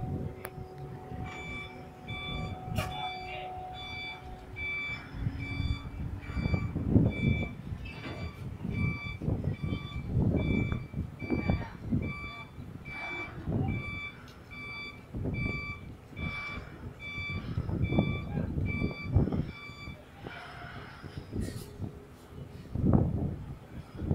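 Electronic warning beeper of heavy-lift equipment: short, high beeps a little faster than once a second. They start about a second in and stop near the end, over irregular low rumbling and a low hum at the start.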